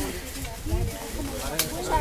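Indistinct voices of a group of people talking, with a sharp click about one and a half seconds in.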